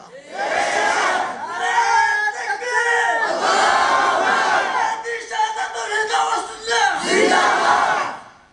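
A crowd shouting slogans together in several loud rounds, then dying away at the end.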